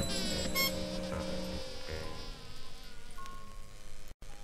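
Faint high-pitched buzzing whine over a few low steady tones, dying away over about three seconds.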